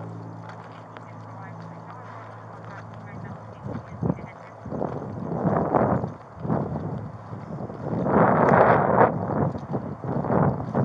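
Police radio traffic: garbled, crackly voice transmissions in bursts, the loudest about eight seconds in. A steady low hum comes first, in the first few seconds.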